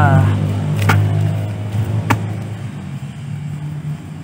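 Hand hoe chopping into loose soil and straw, with two sharp strikes a little over a second apart. Under it a steady low engine hum fades after about the first second.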